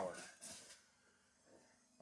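The tail of a spoken word and a short breathy hiss, then near silence: faint room tone.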